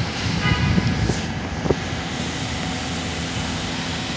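R68A subway train standing at an elevated platform, a steady low rumbling hum from the train.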